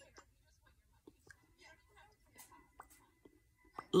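Faint mouth sounds of lips being pressed and smacked together to spread a red liquid lip tint, a scatter of small soft clicks.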